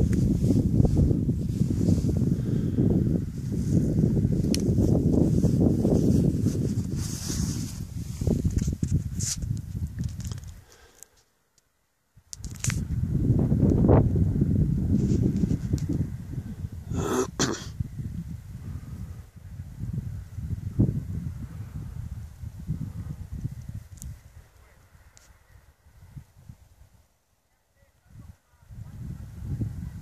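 Wind buffeting the camera's microphone in gusts: a low, blustery noise that swells and fades and drops out briefly twice, about a third of the way in and near the end. A sharp click comes a little past halfway.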